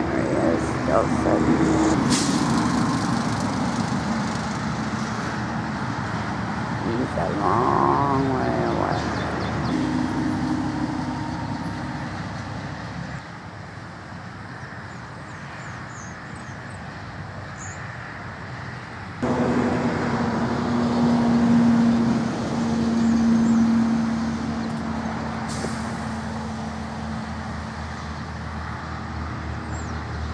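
Vehicle engine and road traffic noise, a steady hum with low droning tones. It drops away suddenly about thirteen seconds in and comes back just as suddenly about six seconds later.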